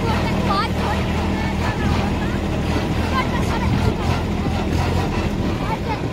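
Kubota B2441 compact tractor's three-cylinder diesel engine running steadily under way in gear.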